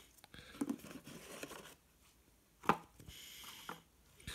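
Cardboard box and foam packing insert being handled: light scraping and rustling of the packaging, with one sharper knock about two-thirds of the way through.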